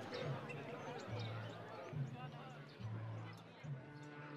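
Faint, indistinct voices over a low, regular bass pulse that comes back about once a second.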